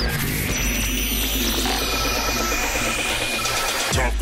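Electronic dance-music intro: a rising sweep builds steadily over a constant deep bass, with a few held synth tones, up to a hit at the end.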